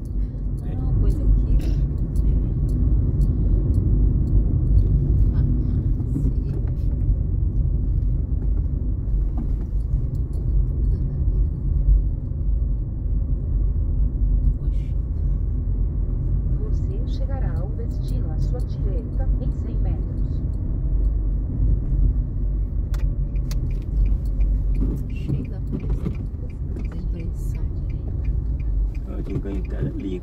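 Low, steady road and engine rumble heard inside a moving car, with scattered light clicks.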